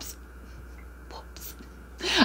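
Quiet room tone with a steady low hum and a few faint, short breathy sounds from a woman's voice, like soft whispers or breaths.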